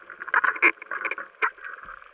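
Muffled underwater knocks and scraping as a steel spear shaft with a speared fish on it grinds against rock and coral. There is a quick cluster of crackly strikes in the first second, then a single sharp one.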